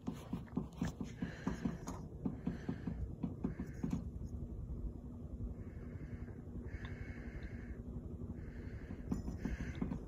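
Casablanca Delta ceiling fan running at medium speed, with a regular knocking rattle of about four beats a second from something loose bouncing around on it. After about four seconds the knocking gives way to a steadier hum.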